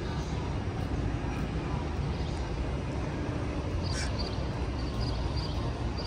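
Steady low rumble of outdoor city background noise, with a faint brief high-pitched sound about four seconds in.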